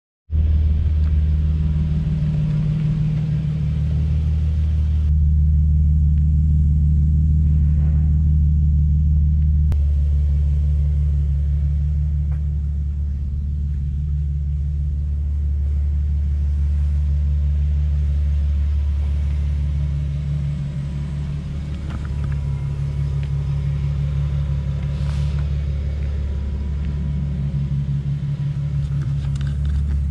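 A 2010 Infiniti G37 coupe's 3.7-litre V6 idling through a catless exhaust and cold air intake: a steady low drone.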